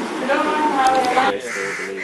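People talking in a room, voices over a group of women, cut off abruptly after about a second and a half, followed by a quieter stretch with a short held call.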